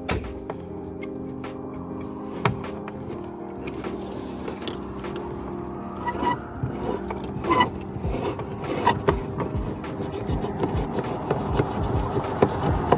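A Torx screwdriver turning a roof-rail mounting screw out of its metal seat: metal scraping and scattered small clicks, busiest in the second half, over soft background music.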